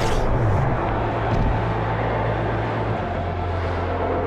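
Steady low drone from a film soundtrack's sound design, with a hit right at the start and a smaller one about a second and a half in.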